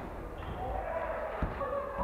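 Basketball game sound in a gymnasium: a ball bounces once on the hardwood floor about one and a half seconds in, with players' voices calling out in the reverberant hall.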